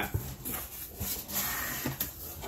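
Cardboard shipping box being opened by hand: flaps and contents rustling, with a few light knocks.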